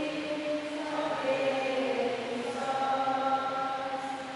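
Voices singing slow liturgical chant in long held notes during Mass.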